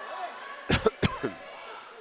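A man coughs twice, a quarter-second apart, close to the microphone, over faint steady background noise from the gymnasium.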